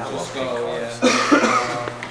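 Men's voices talking, with a short cough about a second in.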